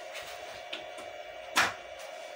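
A single sharp click about one and a half seconds in, a switch being flipped to power on a home-built remote-control switching box. A faint steady hum runs underneath.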